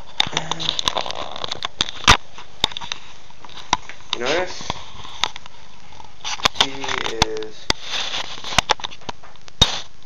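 Handling noise on a handheld camera's microphone: scattered sharp clicks and knocks over a steady hiss as the camera is moved.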